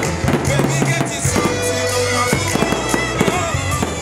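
Aerial fireworks going off in quick, irregular bangs over music with a steady bass line.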